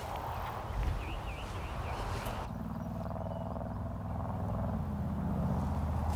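Outdoor background noise with a faint wavering whistle. About halfway in it changes abruptly to a low, steady humming drone that slowly grows louder.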